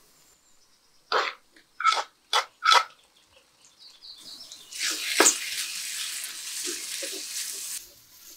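Chopped onions and ginger-garlic paste frying in oil in a stainless steel wok, a steady sizzle that builds from about halfway through and cuts off suddenly near the end. Before it come four short, sharp sounds about half a second apart.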